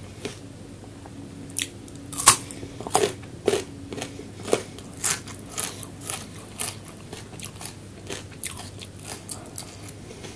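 A person chewing a mouthful of food close to the microphone. It opens with a run of sharp bites, the loudest about two seconds in, then settles into steady chewing about twice a second.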